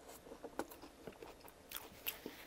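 Close-up chewing of a chili cheese nacho chip: a quiet, irregular run of small crunches and mouth clicks.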